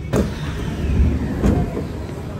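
Sliding doors of a metro train and its platform screen doors opening at a station: a sharp clunk as they release, a falling slide sound, then a second knock about a second and a half in, over a low rumble.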